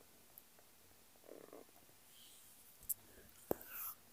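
Faint mouth and breath sounds from a person: a low murmur about a second in, two sharp clicks near the end, and a breathy sound just at the end.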